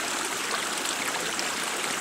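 Running water: a steady, even rush with no distinct drips.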